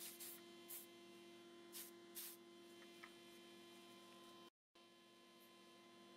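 About five short, faint hisses of an aerosol spray-paint can sprayed in quick bursts over the first two seconds or so, over a steady electrical hum. The sound cuts out for a moment about four and a half seconds in.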